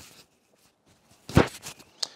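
Handling noise picked up by the RØDE Wireless Go transmitter's built-in microphone as it is clipped under a shirt: quiet at first, then about halfway through a loud knock and rustle of cloth and fingers against the mic, with a few smaller rubs after it.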